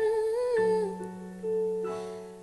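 A woman's voice hums a short wavering phrase with lips closed, over a soft backing track that then holds long steady notes.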